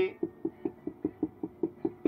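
Whiteboard marker tip tapped repeatedly on a whiteboard to draw a dotted line: about nine quick, even taps, roughly five a second.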